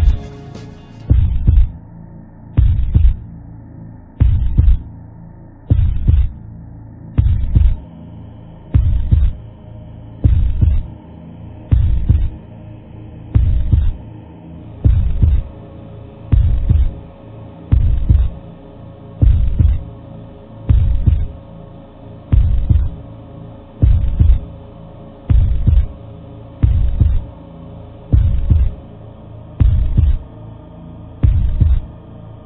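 A slow, deep thudding pulse, one heavy low thump about every second and a half, like a heartbeat, over a steady hum: a suspense effect for a film trailer.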